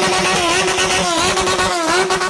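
Motorcycle engine running at high revs, its pitch steady but dipping sharply and recovering a few times.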